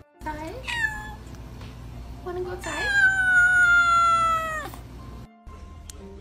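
A kitten meowing: a short falling meow, then a long drawn-out meow of about two seconds that slowly sinks in pitch.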